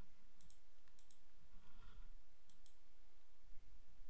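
Computer mouse button clicks: several light clicks, two of them in quick pairs, over a faint steady low hum.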